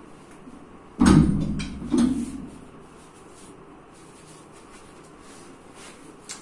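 A bar loaded with about 405 kg of iron plates clunks heavily twice, about a second apart, as it is lifted an inch off stacked tyres and set back down; the first clunk is the loudest.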